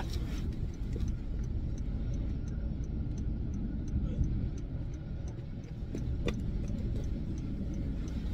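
A car's hazard-light flasher ticking at a steady even rhythm inside the cabin, over a low steady rumble from the car.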